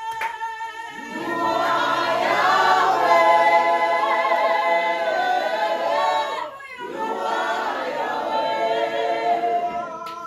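A church congregation sings a worship song together, with many voices holding long notes. The singing briefly falls away about two-thirds of the way through, then picks up again.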